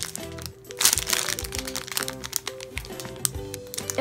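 Clear plastic packaging bag crinkling as a bagged squishy toy is handled, over background music with a steady repeating tune.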